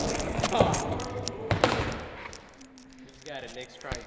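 A skateboard knocking and rolling on the ramp after the rider bails, with a few sharp knocks in the first two seconds, then fading.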